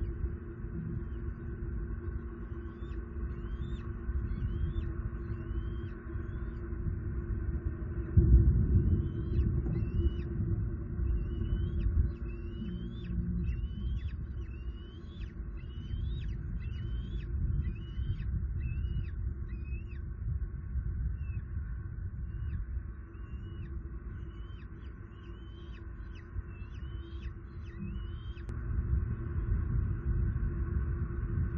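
A bald eagle calling: runs of high, piping chirps, a little more than one a second, in several bouts, from an adult that is on alert. Under them is a steady low rumble, loudest about eight seconds in, and a faint steady hum.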